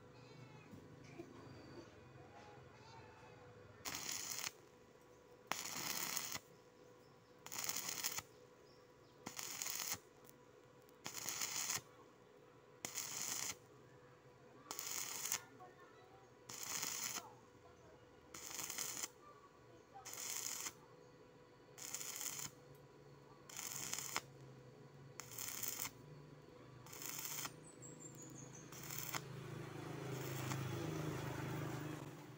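Stick welding arc crackling in about fifteen short bursts, one every couple of seconds, starting about four seconds in: the electrode's arc is struck and broken again and again, an intermittent technique for welding thin angle iron without burning through.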